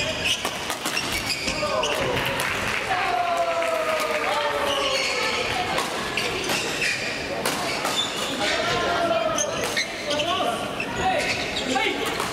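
Badminton play echoing in a large sports hall: sharp racket strikes on shuttlecocks and sneaker squeaks on the court floor, mixed with the voices of players and onlookers.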